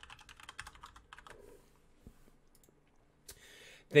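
Computer keyboard typing: a quick run of keystrokes in the first second or so, then a few scattered key presses, with a short soft hiss near the end.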